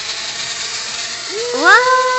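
Tiny quadcopter's small motors and propellers buzzing with a steady high whine, slowly growing louder as it lifts off. Near the end a person's rising "ooh" is heard over it.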